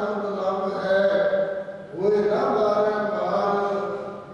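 A man chanting Gurbani into a microphone in long held notes. There are two phrases, with a short breath between them just before two seconds in.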